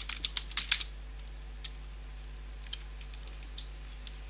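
Computer keyboard typing: a quick run of about half a dozen keystrokes in the first second, then a few faint, scattered clicks. A steady low hum runs underneath.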